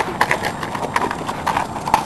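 Footsteps of children running and scuffing on pavement: quick, irregular knocks.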